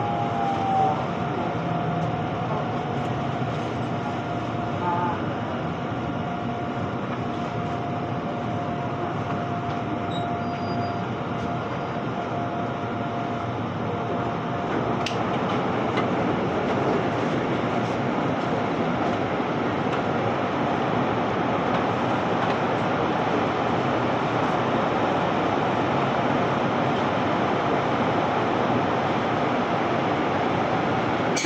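Korail Gyeongchun Line electric commuter train heard from inside as it brakes to a stop at a station. A steady whine over the running noise dies away about halfway as the train halts, followed by a single click and steady cabin noise while it stands at the platform.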